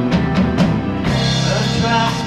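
Live rock band playing: electric guitar, bass guitar, drum kit and keyboard, with regular drum hits in the first second.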